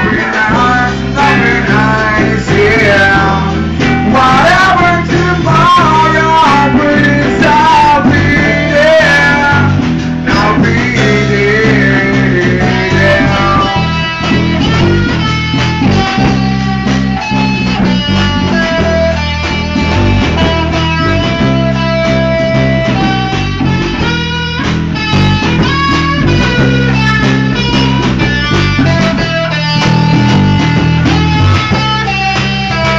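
Amateur rock band playing live in a small room: an electric guitar plays a lead line with bending notes over drums. In the second half the guitar settles into steadier held notes and chords.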